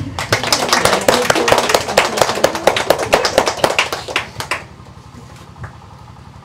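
A small group applauding, with a little laughter at the start; the clapping lasts about four and a half seconds, then dies away.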